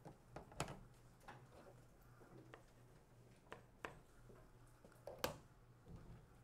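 Near silence: room tone with a faint steady hum and a handful of sharp, faint clicks and knocks, the loudest a little over five seconds in.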